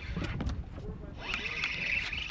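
Spinning reel being cranked fast to retrieve line, a steady whirring from about a second in, over low wind rumble and background voices.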